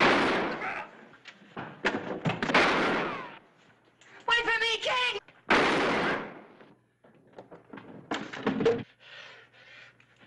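A scuffle: a series of loud crashes and blows, the first right at the start, others about two, five and a half and eight seconds in, with a short high pitched cry a little before the middle.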